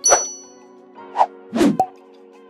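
Sound effects for a subscribe-button animation: a sharp ding right at the start, then two short pops about a second and a half in. A soft, steady music bed plays underneath.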